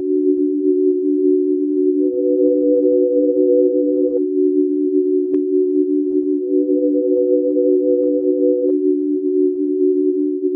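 Synthesized drone intro music: two steady low tones held throughout, with a higher tone joining twice for about two seconds each time. A single short click comes about five seconds in.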